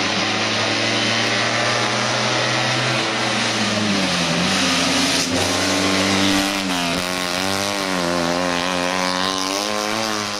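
Steyr-Puch 650 TR's air-cooled flat-twin engine running hard at high revs as the car climbs past. The revs dip and pick up again about three to four seconds in, then rise and fall repeatedly through the bends near the end.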